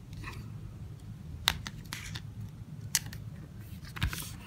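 A paper sticker being peeled from its backing and pressed down by hand onto a paper album page: soft paper rustles with a few sharp ticks, the sharpest about one and a half and three seconds in.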